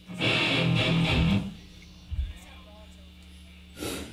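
Distorted electric guitar hitting a short burst of chords for about a second between songs. A low thump follows, then a brief breathy hiss near the end.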